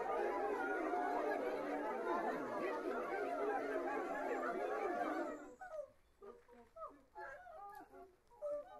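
A choir of about thirty people improvising unconventional, animalish vocal sounds all at once, a dense mass of overlapping calls and pitch glides. About five seconds in the mass stops abruptly, leaving scattered short squeaks and yelps.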